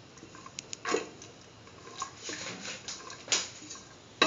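A spoon stirring a watery mixture of split chickpeas in coconut milk in a pressure cooker pot, with a few sharp knocks and scrapes of the spoon against the pot. The strongest knocks come about a second in and a little after three seconds.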